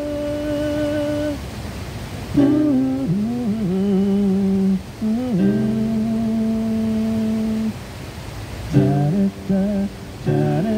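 A man singing a Korean pop song live into a microphone over electronic keyboard accompaniment, holding several long notes with vibrato and ending in quicker short phrases.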